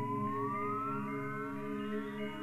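Electronic synthesizer music: a sustained, layered chord with a tone sliding slowly upward in pitch, followed by a couple of fainter rising slides.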